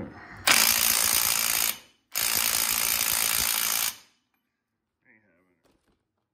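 Snap-on 14.4 V cordless impact wrench hammering on a 27 mm axle nut through a 3/8-to-1/2-inch adapter, in two bursts of about a second and a half and nearly two seconds. The nut does not break loose: the small impact lacks the power for it.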